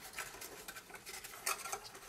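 Cardstock rustling and soft clicks as fingers work the flaps of a small paper box, the loudest click about one and a half seconds in.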